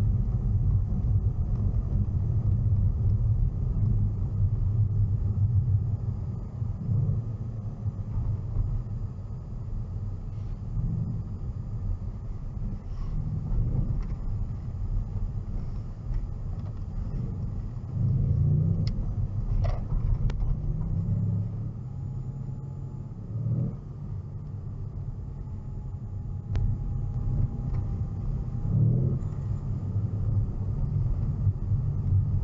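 Low, steady road and engine rumble inside the cabin of a 2015 Mercedes-Benz C63 S driving on a snow-covered street. The rumble eases off a little after about six seconds and picks up again around eighteen seconds in, with a few short knocks late on.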